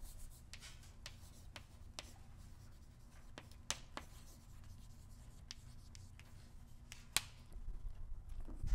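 Chalk writing on a blackboard: faint, irregular taps and scratches of chalk strokes, with a few sharper taps a little past halfway and near the end, over a steady low room hum.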